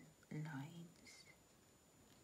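A woman's soft, low voice saying one word, "lines", then near silence.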